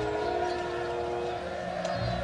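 Film soundtrack: a held musical chord over the shouting of a large crowd.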